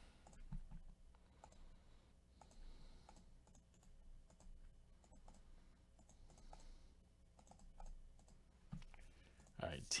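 Faint, scattered clicks of a computer mouse and keyboard over near silence.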